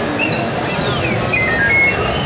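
Star Wars droid replica playing its electronic beeps and whistles: a quick rising chirp, then a long sweep that climbs and slowly falls, then a run of short stepped beeps, over the murmur of a crowd.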